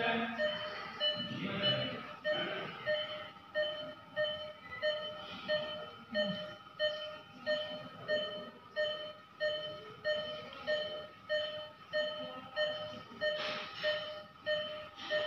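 Operating-room electronic equipment beeping steadily: one short, mid-pitched beep about every 0.6 seconds, evenly repeated.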